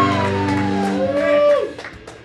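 A live rock band's final chord ringing out, with a high sustained note gliding slowly downward over it; the chord cuts off about one and a half seconds in and a few claps follow.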